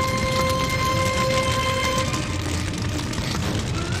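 Sound effect of a house fire burning: a steady roar with faint crackling. A held musical note sounds over it and stops about halfway through.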